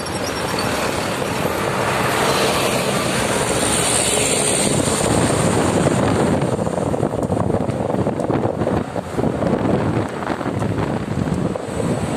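Wind rushing over the microphone of a moving motorcycle, mixed with engine and road noise. The sound is steady at first, then buffets unevenly, dipping and surging in the second half.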